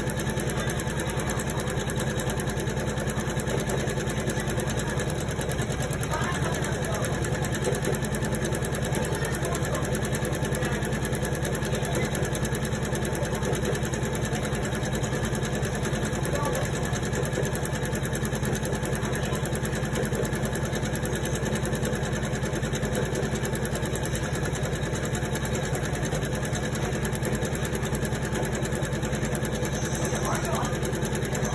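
Computerized embroidery machine stitching steadily, the needle running at a fast, even rhythm.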